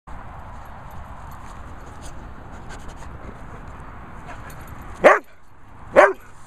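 A dog barks once, loudly, about five seconds in, with a second bark starting right at the end, over a steady low background noise.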